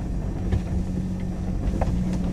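Truck engine running steadily under light load, heard from inside the cab as it climbs a rutted dirt-and-grass track, with a couple of light knocks from the bumps.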